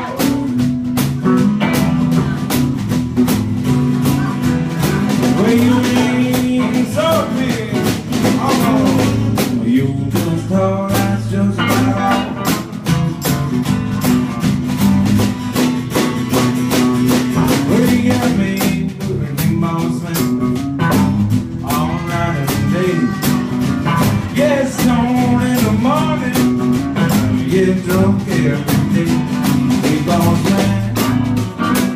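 Live blues band playing: strummed acoustic guitar, electric guitar and a drum kit keeping a steady beat.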